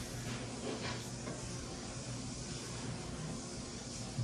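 Quiet room tone: a faint steady hiss with a low hum, and a couple of soft brief sounds about a second in.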